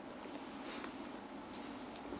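Quiet room tone with a few faint, brief rustles of movement.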